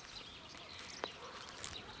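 Faint outdoor background noise, with a single short click about a second in.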